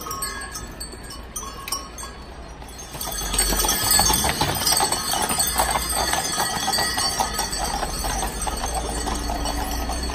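Hooves of a team of draft horses clip-clopping on asphalt, with harness metal and bells jingling. It gets markedly louder and busier about three seconds in as the team pulls a wagon past close by.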